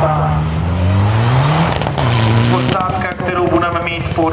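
Mitsubishi Lancer Evolution rally car's engine accelerating hard, its revs climbing, dropping at a gear change just under two seconds in, then climbing again. From about three seconds in, a rapid run of crackles sits over it.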